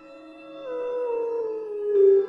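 A long wordless sung note that slides down in pitch in small steps and grows louder, over ambient music with held steady tones.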